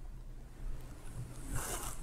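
Low steady room hum, then near the end a brief hissing rustle of bedding fabric brushing the clip-on microphone.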